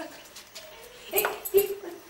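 A few short animal cries in quick succession, starting about a second in after a quiet start.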